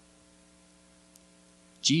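Near silence: a faint steady electrical hum from the sound system. A man's voice comes back in near the end.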